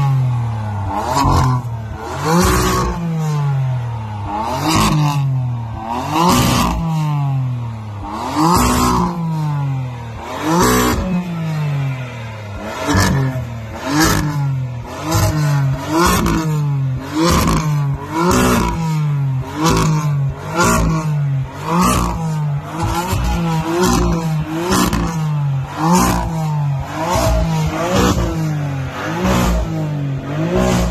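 BMW M4's twin-turbo inline-six, on a stage 1 tune with a catless downpipe, being blipped over and over while stationary. Each rev rises sharply and falls back, with crackles from the exhaust. The blips come every second or two at first, then about once a second through the second half.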